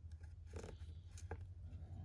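Faint pencil marking on a pine board against a tape measure: a few soft scratches and ticks over a low steady hum.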